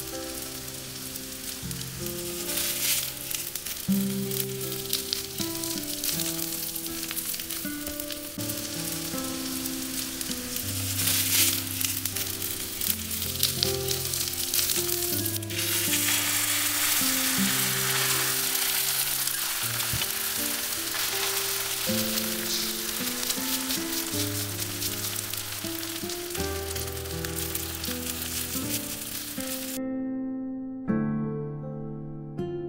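Shredded-cabbage pancake frying in oil on a nonstick griddle pan, sizzling steadily, louder from about halfway through, with occasional small ticks of a spatula on the pan. Background music plays underneath.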